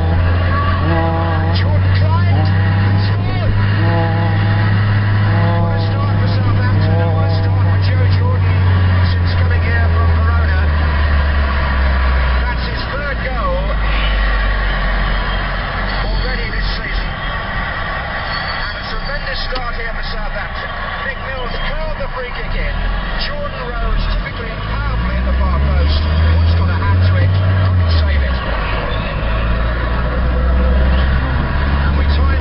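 Car engine droning, heard from inside the moving car's cabin. The pitch drops about twelve seconds in, climbs again near the end and then falls back, as with an upshift. A voice-like sound is mixed in over the first third.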